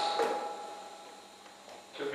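A short pause in a man's speech through a handheld microphone: his last word trails off and fades, with one faint click just after, and he starts speaking again right at the end.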